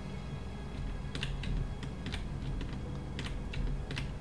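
Computer keyboard keys tapped irregularly, about a dozen separate clicks, over a faint steady low hum.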